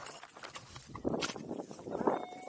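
Handling noise of a small action camera being moved in long grass: faint clicks at first, then from about a second in loud rustling of grass against the microphone with several knocks.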